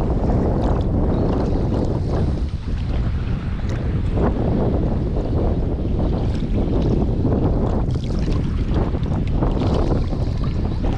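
Wind buffeting the microphone of a GoPro held at the water's surface, a steady loud rumble, with small waves lapping and splashing against the camera now and then.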